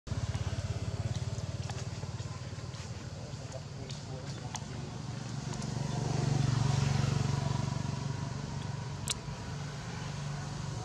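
A low engine rumble of a motor vehicle running nearby, swelling around six to seven seconds in, with a few faint clicks and one sharp tick near the end.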